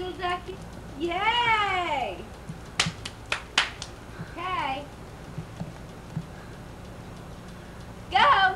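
A long drawn-out vocal call that rises and then falls in pitch, followed by four sharp clicks about three seconds in and a shorter arched call a second later.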